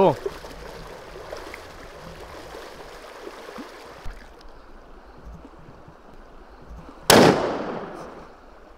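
A single rifle shot from a scoped hunting rifle, loud and sudden about seven seconds in, with its echo trailing off over nearly a second.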